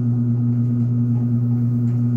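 Low, steady electrical hum with a higher tone an octave above it, unchanging throughout.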